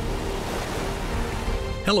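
Ocean waves and surf rushing, with background music of steady held notes underneath.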